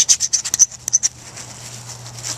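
Quick scratching and rubbing as hands work a wad of toilet tissue and dry tinder, with a blade in hand. The scratches come thick and fast for about the first second, then thin out.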